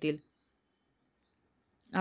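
Near silence in a pause between two stretches of narration, with a few very faint high chirps near the middle.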